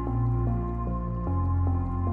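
A melodic sample loop from a producer's loop kit playing without drums: a melody of notes changing about every half second over a deep sustained bass, which drops to a lower note just past a second in.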